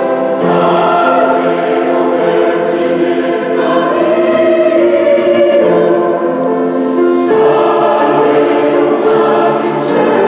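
Mixed choir of women's and men's voices singing sacred classical music in sustained chords that change every few seconds, with sibilant consonants at the changes.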